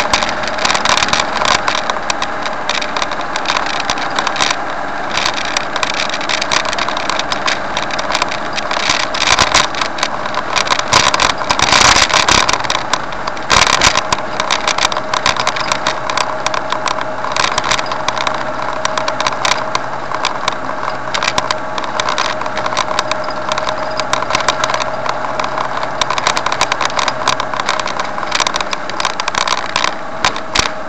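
Motor vehicle driving along a road: steady engine and road noise, with many short crackles throughout that grow a little louder partway through.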